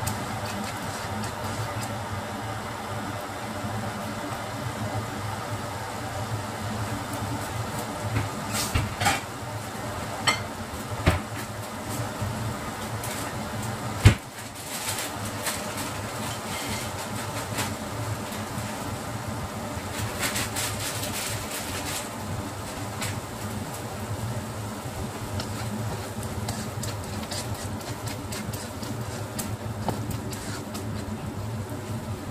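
Spatula scraping and knocking intermittently in a nonstick wok of thick, cooking tomato and plum chutney, with one loud sharp knock about halfway through. A steady mechanical hum, like a kitchen fan, runs underneath throughout.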